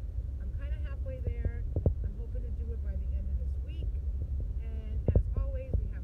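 Steady low rumble of road and engine noise inside a car's cabin while it is driven, with a person's voice over it and a few sharp knocks.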